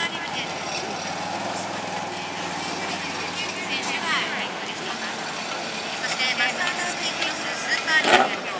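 ATV (quad bike) engine running as it drives off through shallow surf, a steady low hum that fades about halfway through, with voices around it.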